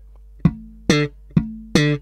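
Electric bass guitar played slap-style, slowly and one note at a time: thumb slaps and muted dead notes about half a second apart, the third one faint.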